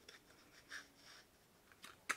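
Near silence, with a couple of faint rustles of cardstock sliding in a handheld paper punch as the paper is lined up.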